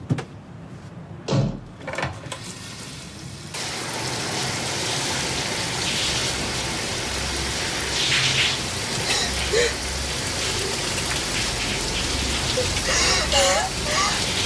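Shower water running: a steady spray hiss that switches on abruptly about three and a half seconds in, after a single knock. A person's voice is heard faintly through the water near the end.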